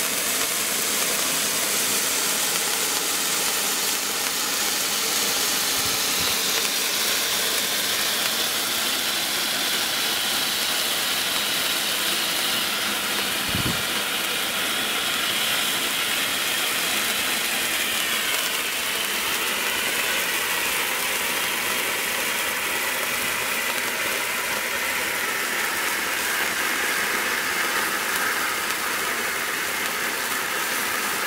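Four 12 cm cake fountains burning together: a steady spraying hiss that slowly sinks in pitch. A brief low thump about halfway through.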